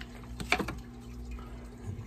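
One sharp tap about half a second in, from plastic cups and a food pack being handled while fish food is measured into a cup. It sits over a faint, steady low hum.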